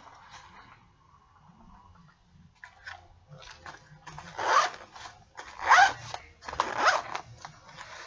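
Zipper of a fabric tablet sleeve case being pulled in three quick strokes over the second half, after a few seconds of soft rustling as the case is handled.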